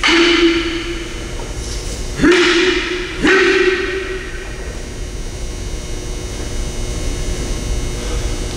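Aikido test in a hall: three sudden loud hits in the first four seconds, the last two about a second apart. Each has a sharp attack and a short, shout-like pitched tail that fades, typical of breakfalls slapping the mat with sharp shouts. After that comes a steadier hall background.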